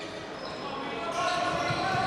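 Live futsal play in a large sports hall: the ball being touched and kicked on the wooden court, with players' distant voices and the hall's general noise.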